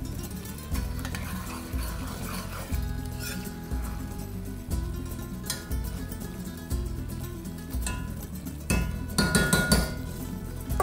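A metal spoon stirring and scraping ground meat and dry spices in an enameled cast-iron Dutch oven, with repeated clinks of spoon against pot and a cluster of sharper clinks near the end.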